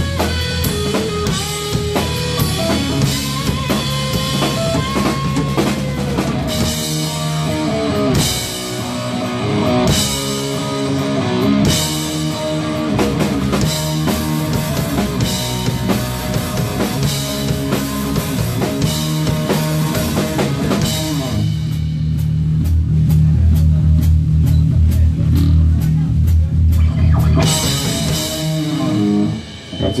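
Rock band playing live: electric guitar, bass guitar and drum kit. About two-thirds of the way in, the cymbals drop out and a heavy low riff with drum hits carries on for several seconds. The full band then comes back in, and the song stops near the end.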